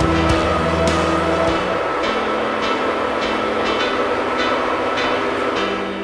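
Background music: sustained low notes that change about one and a half seconds in, over a steady beat of light percussion hits.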